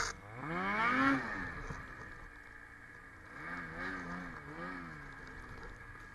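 Ski-Doo 850 two-stroke twin snowmobile engine revving: one rising rev over the first second that then falls away, and from about three and a half seconds in, three quick throttle blips rising and falling.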